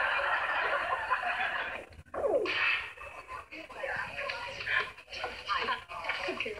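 Sitcom studio audience laughing, dying away about two seconds in, followed by voices.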